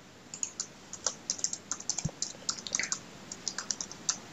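Computer keyboard being typed on, a quick irregular run of key clicks that starts about a third of a second in, with one heavier thump about halfway through.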